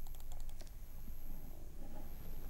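A quick run of light clicks in the first half-second or so, like keys being tapped, then a faint low murmur over a steady low hum.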